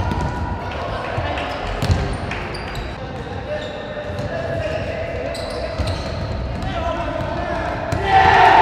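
Futsal match sounds echoing in an indoor sports hall: thuds of the ball being kicked and bouncing on the court, with players' shouts.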